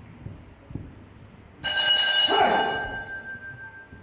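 A loud bell-like chime played as a stage sound effect, struck about a second and a half in and ringing on as it slowly fades, with a second strike right at the end.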